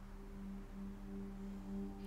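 Faint background music: a soft drone of a few low held tones, swelling slightly.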